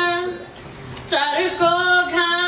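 A woman singing a poem into a microphone in long held notes. She breaks off for a breath about half a second in and resumes just after a second in.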